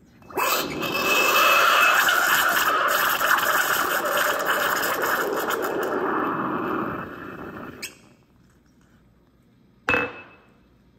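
An espresso machine's steam wand hisses steadily for about seven seconds. The hiss drops a little in its last second and then cuts off suddenly. A single sharp clink follows near the end.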